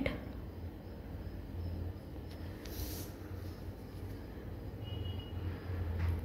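Scissors cutting the paper of a rolled paper tube, with a short crisp snip or rustle of paper about three seconds in, over a steady low hum.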